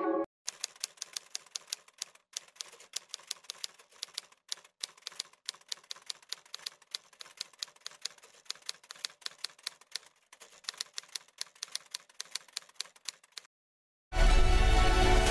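Typewriter key-click sound effect: a rapid, irregular run of sharp clicks, several a second, with a short pause about ten seconds in.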